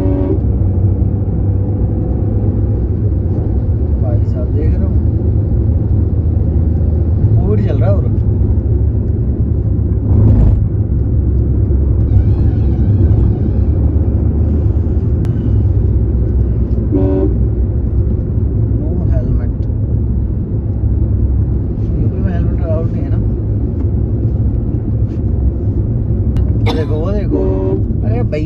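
Steady engine and tyre rumble inside a moving car's cabin at highway speed, with short vehicle horn honks.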